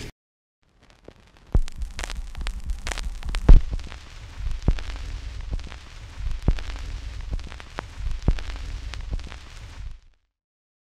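Crackling hiss with scattered sharp pops over a low hum, starting about a second and a half in; the loudest pop comes about three and a half seconds in.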